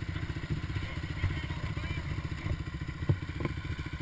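ATV engine idling steadily with a rapid, even low pulse, and a couple of light clicks or knocks a little after three seconds in.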